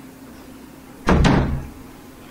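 A single sudden, heavy thump about a second in, deep and dying away within half a second.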